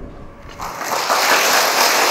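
Large audience applauding, the clapping starting about half a second in and quickly building to a steady level.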